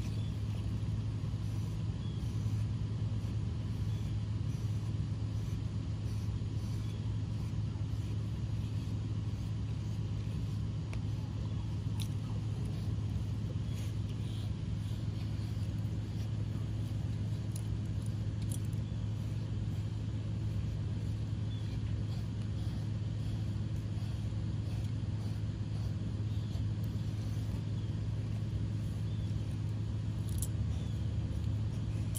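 A steady low mechanical hum, like a motor running without a break, with a few faint ticks over it.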